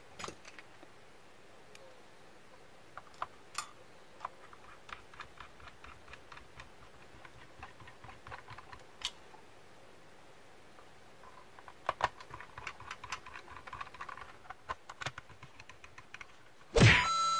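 Small clicks and taps of a screwdriver and plastic router casing parts being handled while the router is reassembled. The clicks are sparse at first, then come in a quicker run of ticks about three quarters of the way through.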